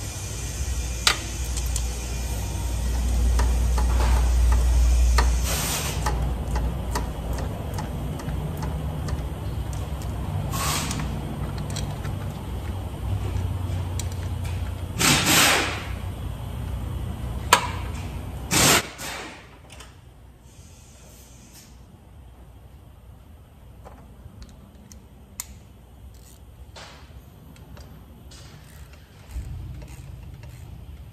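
Auto-shop background: a low, steady machine rumble with several short bursts of air hiss, the loudest a double burst at about 15 seconds and one at about 19 seconds. The rumble cuts off suddenly at about 19 seconds, leaving quieter room tone with a few small clicks.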